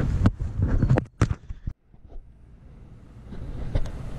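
Wind rumbling on a handheld camera's microphone with a few sharp knocks, cut off abruptly a little under two seconds in, followed by quieter steady outdoor background noise that slowly gets louder.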